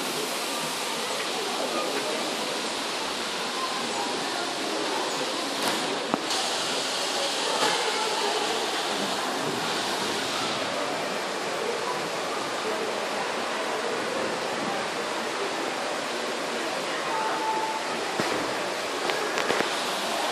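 Steady rushing of falling water, with the indistinct chatter of people in the background.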